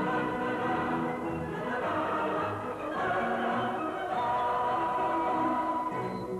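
Operetta orchestra and chorus singing, with a long high note held through the last two seconds.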